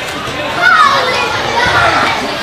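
Children's voices calling and shouting over a general hubbub of players and spectators at an indoor youth soccer game, with one high call falling in pitch a little under a second in.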